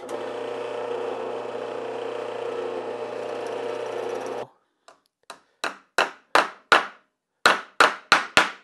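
Drill press running steadily with a twist bit boring a through hole in stacked wooden pieces, cutting off abruptly about four and a half seconds in. Then a quick run of sharp hammer taps on the wooden workpiece, about three a second, louder than the drilling.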